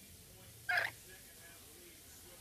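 A green-naped lorikeet gives one brief, sharp call about three-quarters of a second in.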